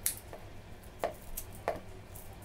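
Kitchen scissors snipping fresh curry leaves into small pieces: several short, crisp snips, the first and loudest right at the start.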